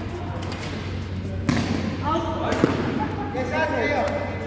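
Badminton rackets striking a shuttlecock in a rally: two sharp hits about a second apart, with players' voices calling out during the second half.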